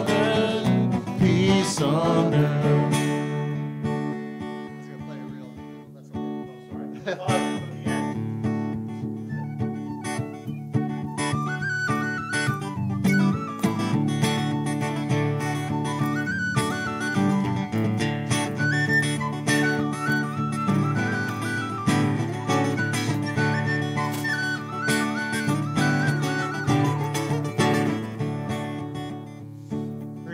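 Acoustic guitar strumming chords under a tin whistle playing an Irish-style instrumental melody; the whistle's stepping melody comes in about ten seconds in.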